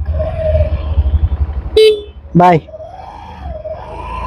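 Honda Activa 125 scooter's small single-cylinder engine catching and running with a low, pulsing rumble, now that the side stand is up; the side-stand cut-off had kept it from starting. A brief loud beep about two seconds in.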